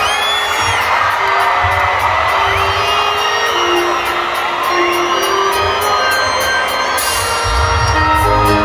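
Reggae band playing live at an arena, with the crowd cheering and whooping over a steady beat of high ticks and low bass. The band sound fills out, with heavier bass, near the end.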